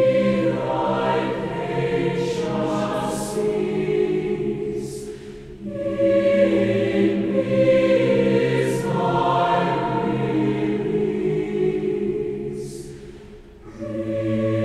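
A large mixed choir of women's and men's voices singing a slow hymn in long held phrases, with a short breath break between phrases about six seconds in and another near the end.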